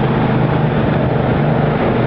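Motorboat running under way towing a tube: a steady low engine drone under a continuous rush of wind and water.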